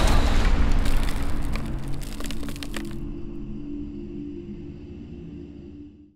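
Horror title-sting music and sound effects: a heavy low rumble dying away under a spray of sharp crackling and cracking, which stops about halfway. A sustained low chord carries on, fading, and cuts off at the end.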